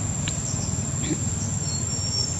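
Steady, high-pitched drone of insects, with a low background rumble underneath and a couple of faint brief ticks.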